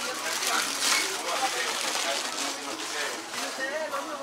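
Supermarket indoor ambience: a steady background hubbub with faint voices of other people in the store.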